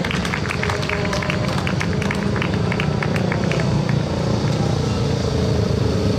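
Several speedway motorcycles' 500 cc single-cylinder methanol engines running together as the riders get under way, a dense steady engine din. A spatter of short sharp cracks sits over it for the first three seconds or so, then thins out.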